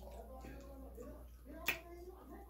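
A person eating grilled chicken by hand: quiet mouth sounds, then a single sharp smack about two-thirds of the way through as she bites.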